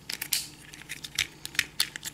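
Hard plastic parts of a Transformers Power of the Primes Sinnertwin figure clicking and rattling as it is handled and its limbs and panels are folded: a string of small, irregular clicks.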